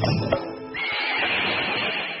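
A horse whinny in the song's backing track, starting just under a second in with a high, rough cry that trails off. It follows the end of a brisk percussive music phrase in the first half second.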